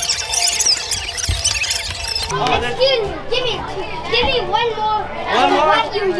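A group of children talking and calling out over one another in high, overlapping voices. About two seconds in, single voices stand out more clearly, rising and falling in pitch.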